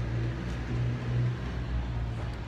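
A steady low hum, like a running engine, under an even background hiss.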